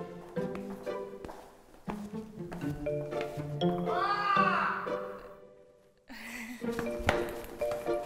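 Light background music with plucked, bouncy notes, and about four seconds in a long yell that rises and then falls in pitch. The music cuts out briefly soon after the yell, then starts again.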